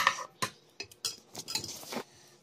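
Metal serving spoon clinking and scraping against a frying pan of curry: several sharp clinks, then a longer scrape in the second half.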